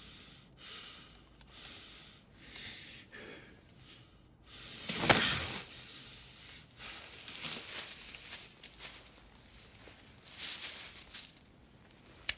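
Soft breaths and rustles of movement, repeating every second or so, with a louder rustle and a click about five seconds in.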